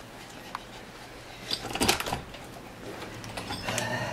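A sliding glass door being opened, with a single click about half a second in and a short run of knocks and rattles around the middle.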